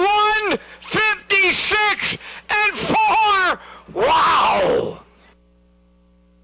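Race announcer's voice calling the finish of a harness race, loud and high-pitched, stopping about five seconds in. After that only a faint steady hum remains.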